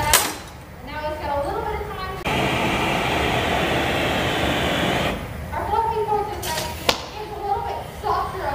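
Gas hand torch hissing steadily for about three seconds, switching on and off abruptly, with brief talk before and after. A sharp click near the start and another near the end.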